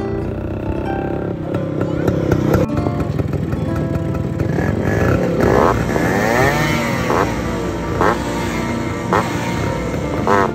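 Motorcycle engines idling, then revved in short sharp blips about once a second in the last few seconds, over background music.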